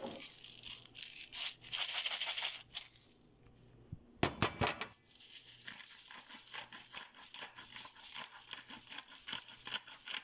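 Kitchen handling sounds: rustling and crinkling for the first few seconds, a short clatter about four seconds in, then a dense, steady run of small crackles.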